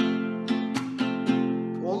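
Nylon-string classical guitar strummed in a quick rhythm, several strokes on one held chord, ringing through.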